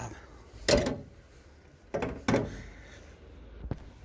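Chevrolet Captiva's bonnet lowered and slammed shut, a loud sharp thud about a second in, followed by two lighter knocks a second later and a small click near the end.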